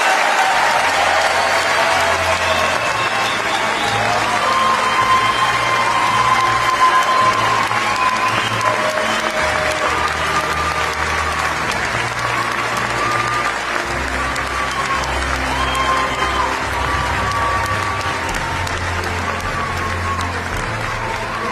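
Large audience applauding steadily, with music playing over the clapping.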